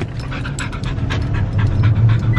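A dog panting rapidly and excitedly, over the low hum of the truck's engine, which grows louder near the end.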